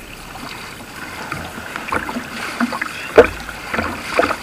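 Pool water lapping and gurgling against a waterproof-cased action camera sitting at the water line, heard muffled through the housing. About three seconds in comes one sharp, loud splash as a man jumps into the pool.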